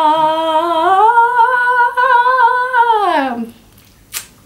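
A young woman's voice holding one long sung note, stepping up in pitch about a second in and wavering slightly, then sliding down and stopping about three and a half seconds in.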